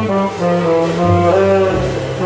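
Live jazz: a saxophone plays a melody line, moving through several notes, over walking upright bass notes underneath.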